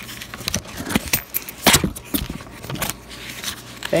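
Nickels clinking against each other as a paper coin roll is opened and poured out onto a cloth mat: a series of separate metallic clinks, the loudest a little before the middle.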